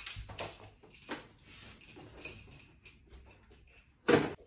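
Faint scattered knocks and clicks, the strongest in the first half-second and another about a second in, over a low rumble.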